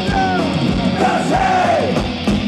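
Punk rock band playing live: distorted electric guitars, bass and drums with shouted vocals, recorded from among the audience.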